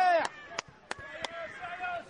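Voices shouting on an outdoor football pitch break off just after the start, then a few sharp clicks and a faint distant call follow.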